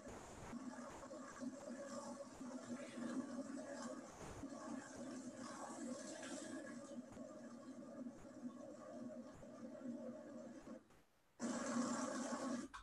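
Faint, steady mechanical hum of a tractor-drawn sugarbeet defoliator working through beet rows and cover-crop residue. The sound cuts out briefly near the end and comes back louder.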